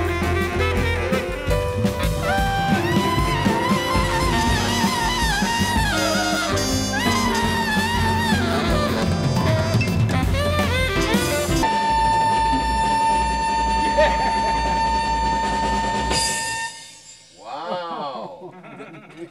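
Small jazz band playing: a saxophone solo line over bass and drums, with bending, ornamented phrases. About twelve seconds in the band settles onto one long held note, which breaks off near the end.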